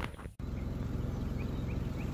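Steady low rumble with a few faint bird chirps, after an abrupt cut near the start.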